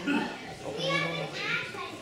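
Young children's voices: brief laughter and indistinct chatter from a small group of children.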